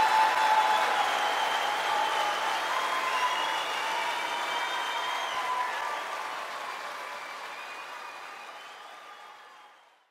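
Audience applauding after a performance, with a few voices calling out in the crowd; the applause fades steadily and is gone by the end.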